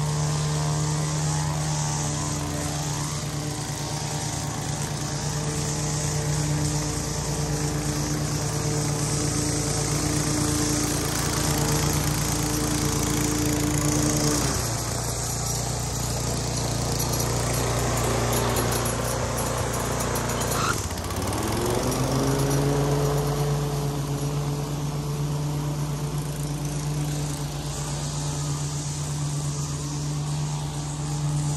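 A Toro gas walk-behind lawn mower running steadily while mowing. About halfway through, the engine pitch drops. A little later it dips briefly, then climbs back to its earlier even pitch.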